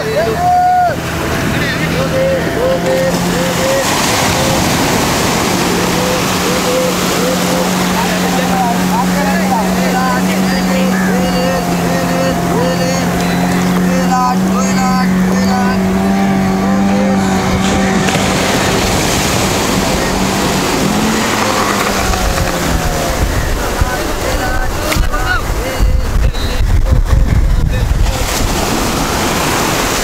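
Fishermen chanting a short call over and over, about once a second, as they haul a beach seine net, over a steady low drone. In the last few seconds, surf washing in and low wind rumble on the microphone take over.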